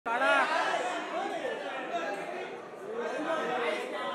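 Indistinct chatter of several voices talking at once, with the echo of a large hall.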